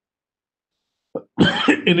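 About a second of dead silence, then near the end a man's short cough or throat-clearing running straight into his speech.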